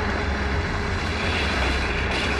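A vehicle's engine rumbling steadily as it speeds along, with a broad rushing hiss over it.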